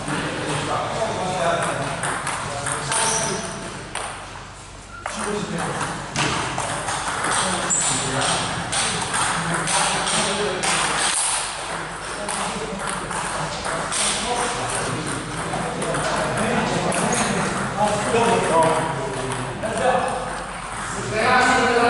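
Table tennis rally: the ball clicking off the bats and the table in a series of sharp, irregular ticks, with people talking in the background.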